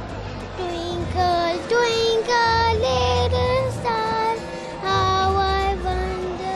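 A young girl singing a song into a handheld microphone, holding each note for about half a second to a second, with the melody stepping up and down.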